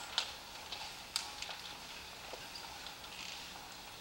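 Quiet room with scattered light clicks and knocks: footsteps and small handling noises of a man moving across a stage.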